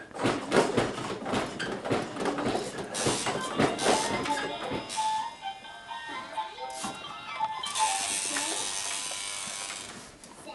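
Plastic toys on a baby's activity center clattering and rattling as they are batted for the first few seconds, then a simple electronic toy tune, and a steady hissing rush near the end.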